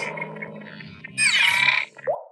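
Electronic sound effects of an animated title intro: a fading tone through the first second, then a bright, layered sweep that glides downward in pitch and cuts off just before the end.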